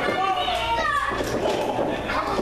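Spectators' voices, children's among them, calling out and chattering over one another, with no single voice standing clear.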